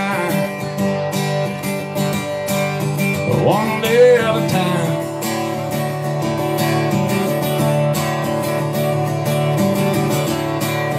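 Guitar strummed in a steady rhythm, an instrumental passage of a live country song.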